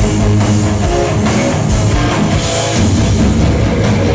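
Heavy metal band playing live at full volume: distorted electric guitars through Marshall stacks over a pounding drum kit, a dense, unbroken wall of sound.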